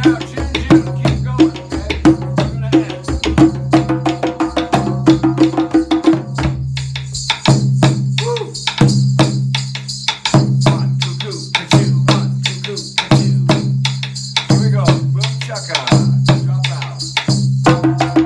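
Two hand-played djembes and a djun djun (dundun) struck with sticks, playing a steady interlocking rhythm together. About seven seconds in, the djembes drop out, leaving the djun djun's low, evenly repeating notes and stick clicks, and the djembes come back in near the end.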